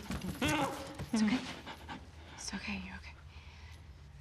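A young man panting and whimpering without words, in a distressed state: a few short breathy voiced sounds in the first three seconds, then quieter.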